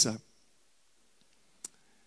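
The end of a man's word over a microphone, then a pause broken by a single short, sharp click a little past halfway.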